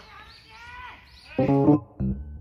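Birds chirping faintly with short rising and falling calls. About one and a half seconds in, background music comes in loudly with plucked, guitar-like notes.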